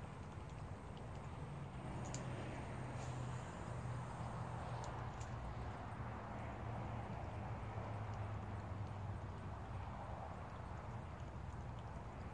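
Steady outdoor background noise: a low rumble under a faint hiss, with a few faint clicks between about two and five seconds in.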